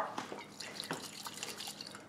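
Oil-and-vinegar dressing sloshing faintly inside a capped glass carafe as it is shaken to mix into a vinaigrette.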